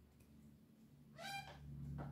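Office chair giving one short, slightly rising squeak about a second in as the sitter leans aside, over a faint low hum.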